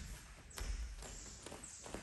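Bare feet and bodies moving on foam martial-arts mats as two men get up from sitting: a soft thump about half a second in, then light taps and shuffling.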